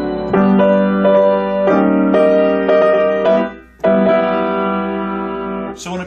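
A 5'3" Hallet Davis baby grand piano played in a slow series of full chords, each struck about half a second apart. After a brief break a final chord is struck and left to sustain for about two seconds.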